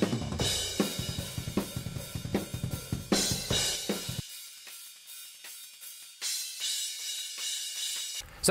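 Overhead-mic tracks of a metal drum kit playing back, first unprocessed with the whole kit's kick, snare and toms heard in them. About four seconds in the EQ is switched back on and cuts away nearly all the low and middle range, leaving mostly thin cymbals and hi-hat.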